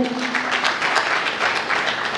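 Audience applauding: a steady patter of many hands clapping that thins out and fades near the end.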